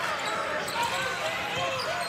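Basketball being dribbled and handled on a hardwood court, over steady arena crowd noise.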